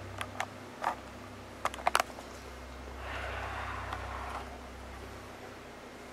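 Handling noise from a hand-held camera being moved around: several sharp clicks in the first two seconds, then a soft rustle about three seconds in, over a steady low hum.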